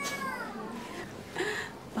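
A single drawn-out cat meow that rises slightly and then falls away.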